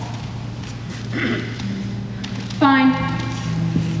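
Quiet underscoring music of steady, sustained low notes, over which a performer clears her throat and gives a short vocal sound.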